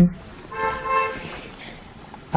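Low background hiss with a faint, steady pitched tone beginning about half a second in and lasting under a second.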